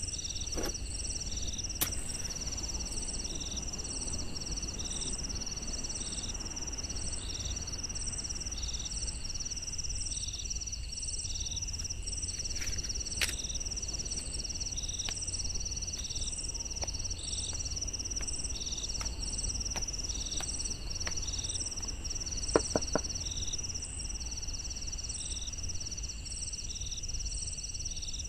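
Insects chirping without pause: a constant high trill with short trains of higher chirps repeating over it, above a low hum. A few soft knocks stand out, one about halfway through and a quick pair later on.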